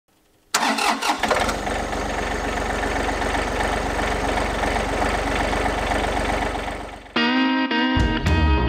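A John Deere compact tractor's diesel engine starts about half a second in, with a short rough burst as it catches, then settles into a steady idle. The engine fades out near the end as guitar music comes in.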